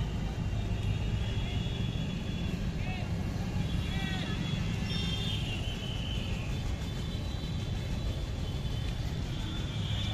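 Steady low rumble of outdoor traffic noise, with a few faint, short high-pitched sounds about three and four seconds in.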